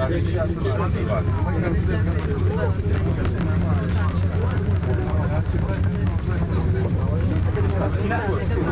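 Several people talking indistinctly inside a gondola lift cabin, over a steady low hum of the cabin travelling up the cable.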